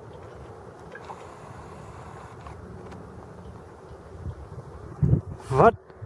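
Wind on an open hilltop, a steady low rumble and hiss against the microphone. Just after five seconds there is a short low thump, and then a man's voice begins.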